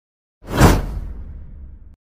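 Logo-intro sound effect: a sudden whoosh with a deep low boom about half a second in, fading away over about a second and a half and then cut off abruptly.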